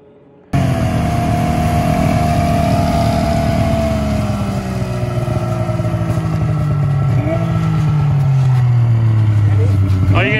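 Polaris XLT 600 three-cylinder two-stroke snowmobile engine running close by. It cuts in suddenly about half a second in and is loud, its pitch falling slowly as the revs drop.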